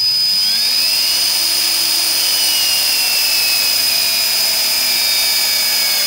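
Geared electric motor of an American Power Tool cordless tube-fitting tool running with a steady high whine as it turns a half-inch Swagelok fitting nut through one and one-quarter turns. Its pitch sags slowly as the motor labors under the tightening torque.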